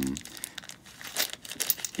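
Clear plastic packaging crinkling in a few short rustles as it is handled, starting about a second in.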